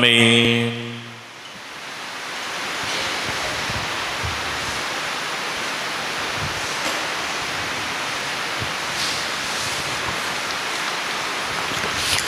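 A sung 'Amen' is held and ends about a second in. Then a steady, even hiss of room background noise grows in over a couple of seconds and holds, with a few faint soft knocks.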